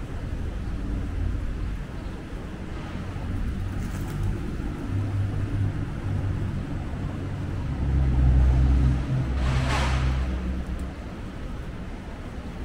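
Street traffic: a low, steady engine rumble that swells as a vehicle passes about eight to ten seconds in, with a brief hiss near the loudest point.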